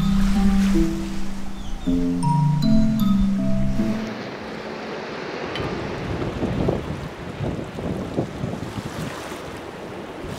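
A short melodic music passage that ends about four seconds in, followed by wind buffeting the microphone over the wash of the sea.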